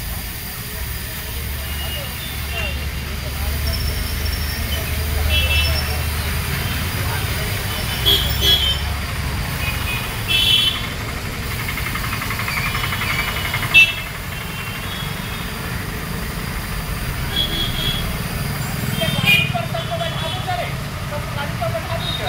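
Outdoor background: indistinct voices over a low, steady engine-like hum, with short high chirps now and then and a few brief knocks.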